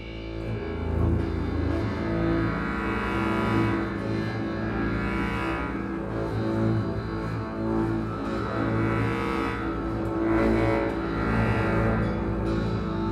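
Free-improvised ensemble music led by a bowed double bass, with sustained tones from a bass clarinet and harmonica and touches of harp, swelling and ebbing in loudness.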